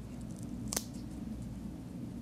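Gloved fingers pressing an adhesive bandage onto a palm over a low steady room hum: a single sharp click about three-quarters of a second in, and a few fainter ticks.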